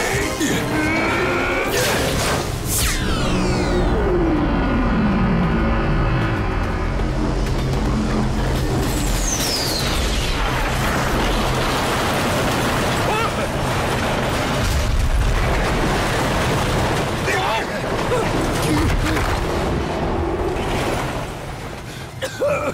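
Cartoon action sound effects over a dramatic music score: explosion booms and the noise of a speeding train on its track, loud and continuous.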